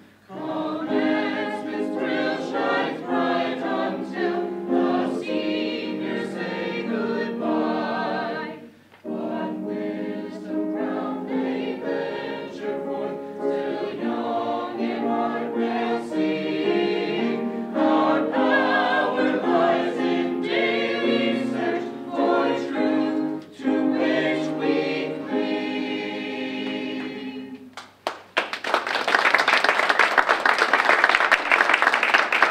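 Mixed choir of men's and women's voices singing, the song ending a couple of seconds before the end; audience applause starts right after it.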